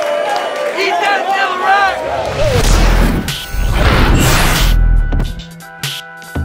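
Crowd voices shouting for the first two seconds. Then a produced transition effect: deep bass booms with whooshing sweeps, ending on a quieter held music chord.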